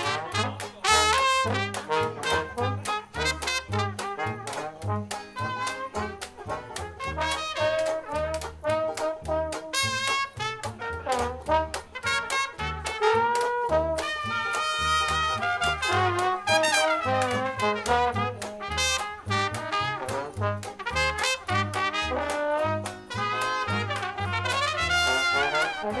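A small traditional jazz band playing: trumpets and trombone carrying the melody over a plucked upright bass and a washboard scraped for rhythm.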